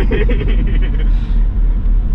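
Inside the cabin of a BMW E34 520i on the move: its M20 straight-six and the road make a loud, steady low rumble.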